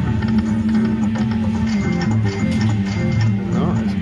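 Aristocrat More Chilli poker machine playing its free-games music, a strummed guitar tune with a steady beat, while the win meter counts up.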